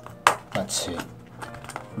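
Small cardboard blind box being handled and pried open by hand: one sharp snap-like click about a quarter of a second in as the carton is worked, with light cardboard handling after it.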